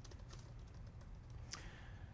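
Faint light clicks and handling noise, like small taps at a table, with a sharper click about one and a half seconds in, over a steady low hum.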